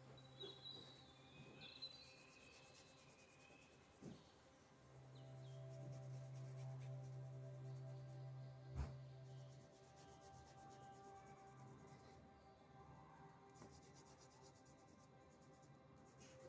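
Faint, soft background music with long held notes, under the quiet scratching of a green crayon rubbed on drawing paper. A single sharp click a little past the middle.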